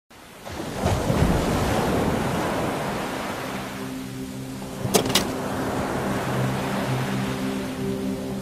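Ocean surf, a wash of breaking waves that swells up within the first second and then settles. A soft held music chord comes in about halfway, and two sharp clicks sound near the five-second mark.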